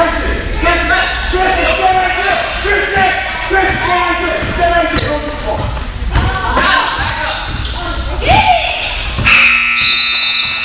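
A basketball being dribbled on a gym floor, with players and spectators calling out and echoing around a large gym. About nine seconds in, a steady electronic buzzer starts and holds.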